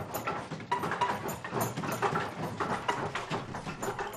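Several wooden hand looms clacking and knocking irregularly as weavers beat and shift them, many overlapping strokes.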